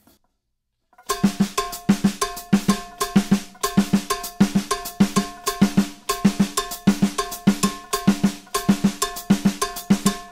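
Drum kit played with sticks: a steady, repeating Latin rhythm exercise that breaks up quarter notes against rumba clave. It starts about a second in, after a short silence, with some strokes ringing briefly.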